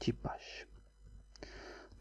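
A man's soft voice under his breath: a short spoken syllable, then two breathy, whispered stretches.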